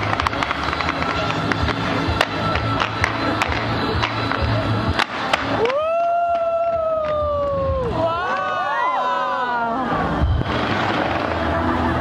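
Fireworks crackling and popping over a crowd. About halfway through, one long high whoop rises and slowly tails off, followed by several overlapping whoops from the crowd.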